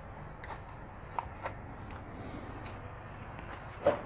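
A few faint clicks as a Torx screwdriver backs out the screws of a headlight retaining ring, over a steady, high, evenly pulsing insect chirping.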